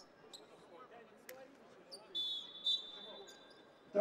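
Referee's whistle blowing to call a foul: two sharp high blasts a little past the middle, the first longer. Earlier there are a couple of sharp knocks from the ball or shoes on the court, over faint crowd noise in a large arena.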